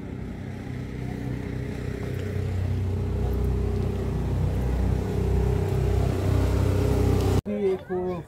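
A motor vehicle's engine running with a steady low hum, growing gradually louder, then stopping abruptly near the end.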